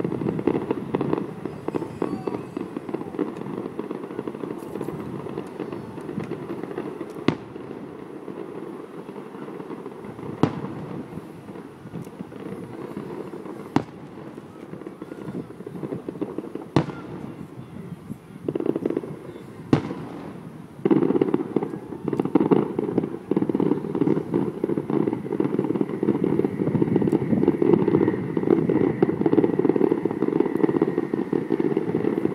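Distant aerial fireworks shells bursting, a sharp bang every few seconds, over a continuous low rumbling noise that grows louder near the end.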